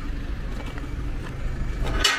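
Steady low outdoor rumble, swelling into a brief rush of noise right at the end.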